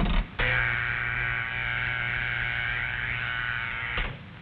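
Old-style Bell System telephone dial tone: a steady buzzing tone that starts about half a second in and holds without change.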